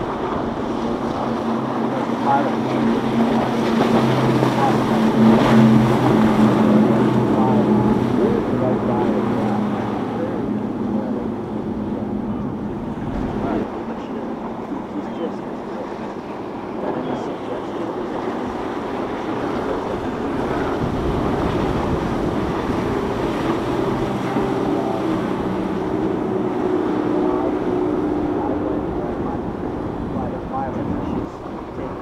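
Motorboats running at speed past the shore. A steady engine drone swells to its loudest about five seconds in, fades, then builds again for another pass in the last several seconds. Underneath is a haze of water wash and wind on the microphone.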